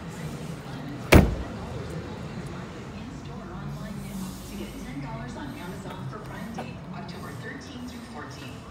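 A single loud slam about a second in: the trunk lid of a 1958 Chevrolet Impala being shut.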